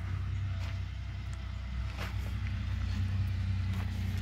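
A tractor engine running with a steady low drone, with a few faint clicks over it.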